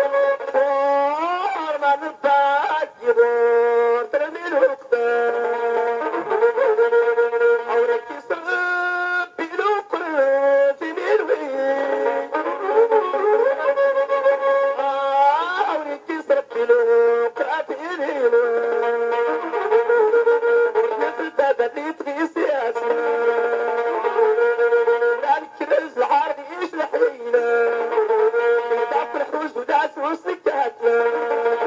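Tashelhit Amazigh rways song: a man sings long held notes with sliding ornaments, over a nasal-toned melody instrument that plays along with him.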